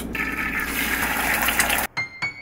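Tap water running into a pan in a sink as hands wash it, a steady rush that cuts off abruptly just before the end.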